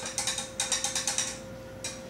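A thin stirring rod clinking rapidly against the inside of a small drinking glass, about ten clicks a second, as chlorine test drops are stirred into a water sample; the stirring stops about a second and a half in, with a last click near the end.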